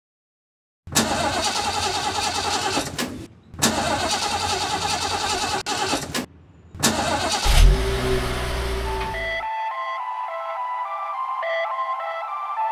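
An old car's engine is cranked on the starter in three tries, the third catching with a low rumble about seven and a half seconds in. The engine sound cuts off suddenly about two seconds later, and a synth melody takes over.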